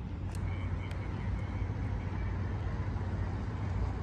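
Steady low hum of a distant engine, with a few faint clicks in the first second or so.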